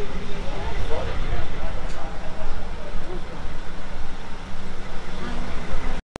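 A parked coach's diesel engine idling with a steady low rumble, under indistinct chatter of people nearby.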